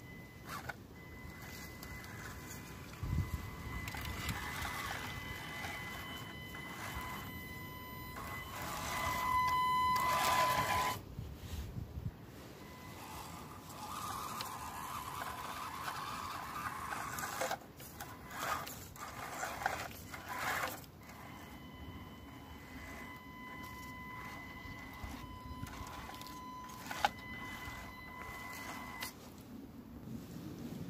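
Small electric motor and gear drive of an RC crawler truck whining at a steady pitch as it crawls, loudest about ten seconds in. The whine drops out for a stretch in the middle, filled with scuffs and knocks, and comes back in the last third.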